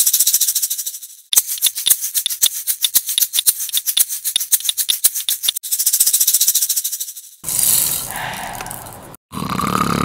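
Toy maracas shaken fast, a dense rattle for about seven seconds with a short break about a second in. A different, noisier sound takes over near the end.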